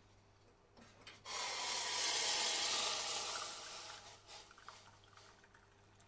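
Hot water poured from a small metal saucepan into a ceramic mug, starting about a second in and trailing off after about three seconds.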